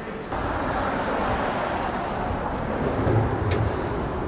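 Road traffic on a city street: a steady rush of vehicle noise that comes up suddenly just after the start, with a deeper rumble about three seconds in.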